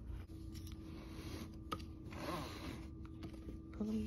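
Nylon harness straps of a Doona infant car seat rustling and scraping against the seat's fabric and frame as they are pulled through by hand, in uneven spells, with a sharp tick nearly two seconds in.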